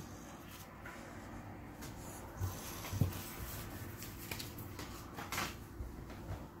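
Trading cards being handled and set down on a cloth playmat: faint rustling with a few soft taps, the clearest about three seconds in, and a brief sliding rustle near the end.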